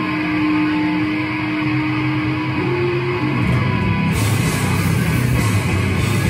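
A live heavy metal band plays loud: distorted electric guitar and bass over a drum kit. A single note is held over the low riff and steps up once, and cymbals come back in about four seconds in.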